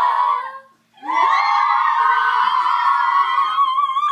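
Girls' choir singing a held note that stops, then after a short pause starting a new one; soon a single high voice stands out, holding a long note with vibrato.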